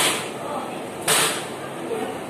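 Two sharp strikes about a second apart, part of a steady run of blows being struck on a person in a beating.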